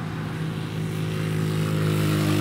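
A motor vehicle's engine running with a steady, even hum that slowly grows louder.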